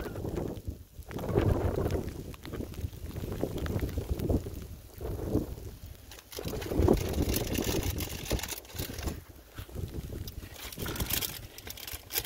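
Gusty wind buffeting the phone's microphone, rumbling in irregular surges that rise and fall every second or two.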